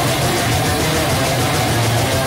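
Metalcore band playing live at full volume: heavily distorted electric guitars over the full band, a loud, steady wall of sound with a low held chord.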